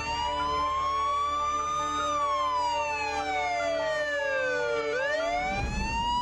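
Siren wail used as a sound effect over a sustained music drone. The wail rises slowly for about two seconds, falls for about three, then starts to rise again near the end.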